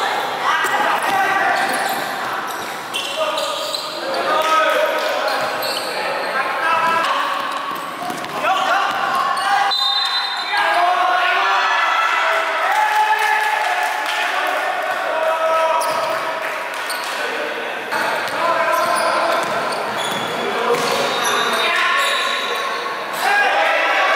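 Basketball bouncing on a wooden indoor court during play, with players' voices calling out and talking, echoing around a large gym hall.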